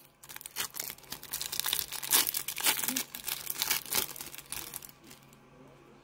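A plastic trading-card pack wrapper being torn open and crinkled by hand: a dense run of crackles that dies away about five seconds in.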